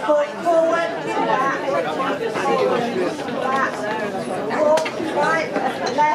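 Many people chattering at once in a large hall, overlapping voices with no one voice standing out.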